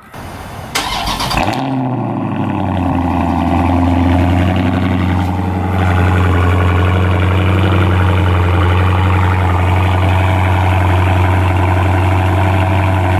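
Dodge Charger's HEMI V8 cold-starting through its dual exhaust: a short crank, the engine catches with a loud flare about a second in, then settles into a steady, absolutely loud high cold idle.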